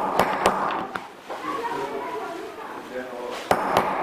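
Hammer striking a set of hollow leather punches bound together, punching brogue holes through leather: sharp taps, three in the first second and two more near the end.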